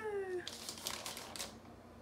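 A short falling hum from a person's voice, then a second of light clicks and rustles from a gift-wrapped box being handled and tilted.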